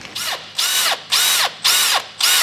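Cordless drill running in short trigger bursts, about four in two seconds, the pitch rising and falling with each burst, as its bit drills the stripped bolt hole in the soft aluminium engine block out to the thread-repair insert's drill size.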